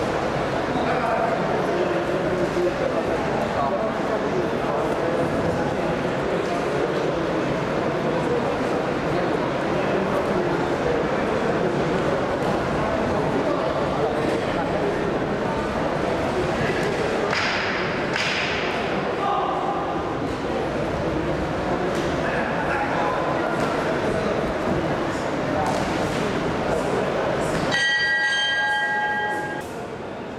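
Spectators in a large sports hall shouting and calling out during an amateur boxing bout, a steady din of voices. About two seconds before the end a bell rings, marking the end of the round.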